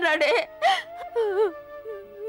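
A woman speaking in a tearful, whimpering voice that breaks and wavers, over a soft, steadily held note of background music.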